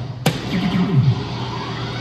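A soft-tip dart hits an electronic dartboard with a sharp tap about a quarter second in, and the machine answers with its electronic hit effect, a run of falling tones, for a triple 12. Music plays underneath.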